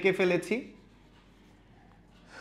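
Felt whiteboard duster wiping marker off a whiteboard, under a man's voice in the first half second, then near silence.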